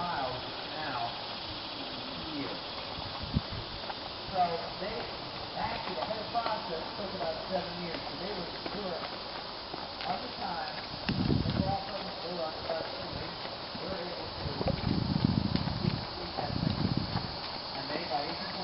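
A mule team walking on a gravel towpath, hooves plodding on the gravel, with indistinct voices in the background. A few louder low rushes of noise come twice in the second half.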